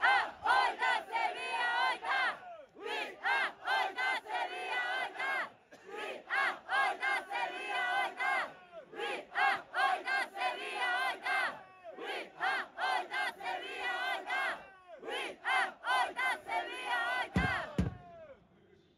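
Football supporters chanting in unison in rhythmic shouted phrases, with hand claps. One voice close to the microphone is loud and hoarse.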